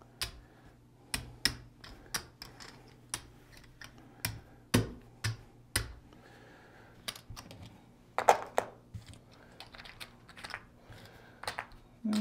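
Casino chips clicking against each other as they are picked up off the craps layout and stacked in the hand. The clicks come singly and in short runs at irregular intervals, with a few louder clacks in the middle.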